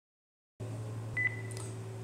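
A steady low hum starts about half a second in. A little over a second in comes a short, high electronic beep with a couple of faint clicks.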